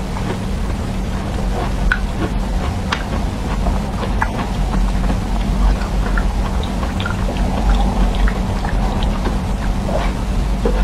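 Close-miked eating of firm blue jelly: scattered short wet clicks and squishes of biting, chewing and mouth sounds, over a steady low hum.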